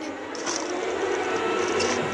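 Steady, even hiss of outdoor background noise that grows slightly louder, with no distinct events.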